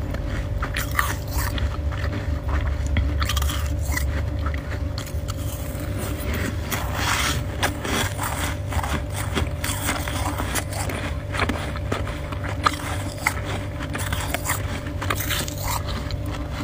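Close-miked chewing and crunching of powdery freezer frost: a dense, irregular run of crisp crackles over a steady low hum.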